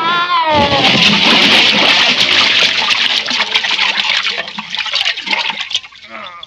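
A short pitched glide up and down, then a person falling into a garden pond: a big splash and several seconds of churning, sloshing water with scattered drips, fading near the end.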